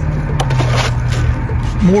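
A steady low hum, with a few clicks and a brief scratchy rustle about half a second in.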